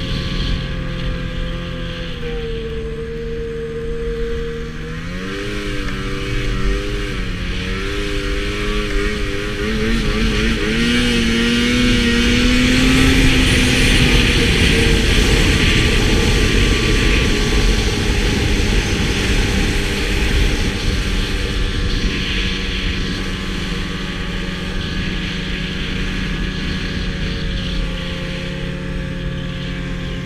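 Arctic Cat snowmobile engine running under the rider as it crosses snow. Its pitch wavers and steps during the first several seconds, then climbs as the sled speeds up near the middle, where a rushing hiss is loudest.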